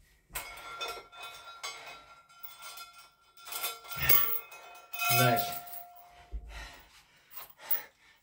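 Metal clinking and clanking as a dip belt's chain and a 20 kg metal weight plate are unhooked and handled after weighted chin-ups, with brief ringing from the struck plate. A couple of breathy voice sounds from the lifter in between.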